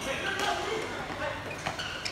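A futsal ball being kicked and played on a hard court, a few sharp knocks, with players calling out in the background.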